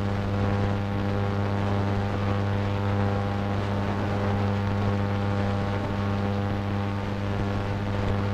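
A steady low drone with an even stack of overtones, unchanging in pitch and loudness throughout.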